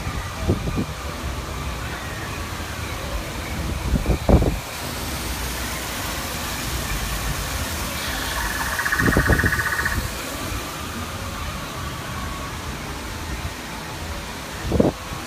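Steady rushing ambient noise with a few low thumps. From about five seconds in, a brighter hiss of falling water from an artificial rockwork waterfall joins it. About eight seconds in, a rapid pulsing high tone sounds for about two seconds.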